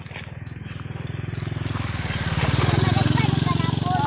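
Motorcycle engine approaching, its steady pulsing note growing louder until about three seconds in.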